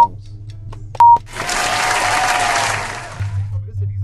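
Game-timer countdown beeps, a short high tone at the start and another about a second in, followed by a burst of noise about two seconds long that swells and fades: an end-of-round sound effect.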